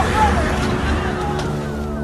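Raised men's voices over a steady, noisy rumble. Near the end a quick run of short, falling electronic tones begins.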